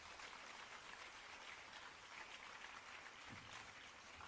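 Faint, steady applause from a seated audience clapping.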